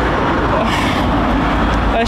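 Road traffic noise: a motor vehicle passing close by, a steady rumble and rush of engine and tyres.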